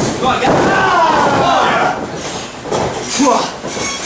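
Shouting voices of a small ringside crowd and wrestlers, with a heavy thud of a wrestler being slammed onto the wrestling ring mat.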